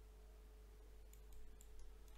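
Near silence: a faint steady hum, with several faint clicks of a computer mouse in the second half.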